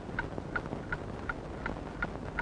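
A steady clip-clop beat of short, hollow knocks, evenly spaced at about three a second.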